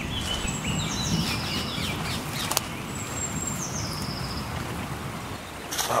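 Birds singing: a high series of quick notes falling in steps, heard twice, over a steady low rumble of noise, with a sharp click about halfway through.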